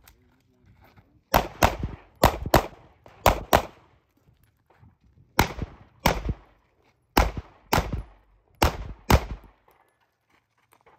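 Semi-automatic pistol fired about a dozen times, mostly in quick pairs about a third of a second apart, each shot a sharp crack with a short echo. The groups are separated by pauses of up to two seconds.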